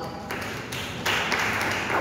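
Audience applause, a few scattered claps at first that swell into full clapping about a second in.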